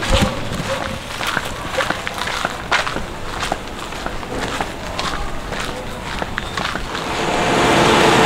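Footsteps of a person walking on a concrete and sandy footpath, irregular scuffs and steps. Near the end a louder steady hum with a few held tones comes up.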